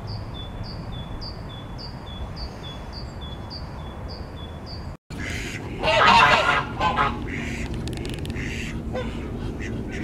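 A small bird repeats a short, high, falling chirp about twice a second. After a brief dropout, ducks quack loudly a second or so later, then call more softly.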